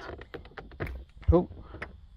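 A run of small clicks and knocks as a hand works the plug in a car's dashboard 12-volt power socket and pulls it out.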